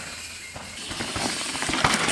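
Yeti SB150 mountain bike riding a dirt trail: tyres hissing over the dirt, with scattered clicks and rattles from the bike. It is quieter at first and grows louder near the end as the bike comes close.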